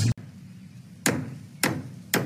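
Hammer blows on wood, two sharp strikes about half a second apart, in an otherwise quiet stretch just after a burst of music cuts off at the very start.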